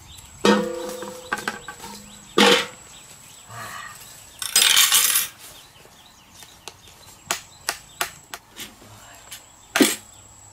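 Stainless steel basin clanging as it is knocked and set down, ringing for over a second, with a second clang about two seconds in. A short rustle follows, then a series of light sharp clicks and taps.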